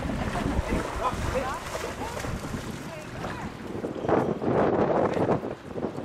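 Wind buffeting the microphone, with small waves lapping at the shore and people talking. The noise thickens for a second or so about four seconds in.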